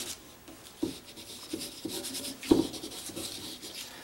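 Coloring markers rubbing and scratching in quick strokes across drawing paper, with a few short knocks, the strongest about two and a half seconds in.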